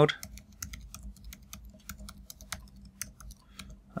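Typing on a computer keyboard: a quick, uneven run of keystrokes as a single word is typed out.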